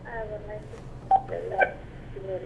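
A caller's voice coming through a telephone line: thin, narrow-band and faint, hard to hear.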